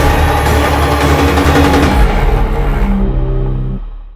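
Film trailer soundtrack: dense, loud dramatic music mixed with explosion and debris effects, thinning out after about two seconds into a few held low notes that fade away near the end.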